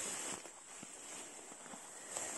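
Footsteps swishing through tall grass and ferns, with the steady high chirring of grasshoppers behind them.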